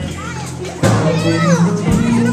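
Live blues improvisation by a small band with upright bass, keyboard and electric guitar, the bass notes held low and steady with a strong new attack a little before the middle. Children's voices shout and chatter over the music.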